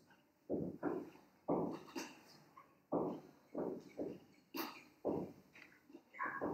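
An animal calling over and over in short, sharp bursts, about two a second.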